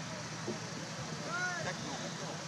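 Indistinct chatter of several voices at a distance over a steady background hiss, with no music playing.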